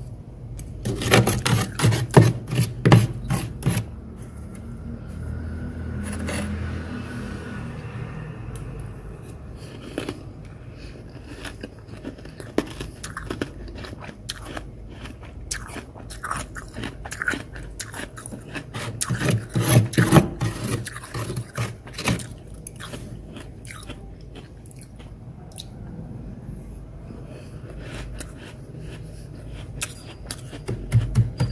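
Freezer frost being bitten and chewed, a crisp crunching in bursts, densest about a second in and again around twenty seconds in, with scattered crunches between.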